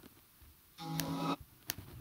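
Computer mouse clicks, with a brief held musical sound, several steady notes together for about half a second, about a second in.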